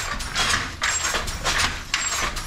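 Wooden handloom being worked at a steady pace: the shuttle passing and the beater striking, a rhythmic mechanical rattle of about two strokes a second.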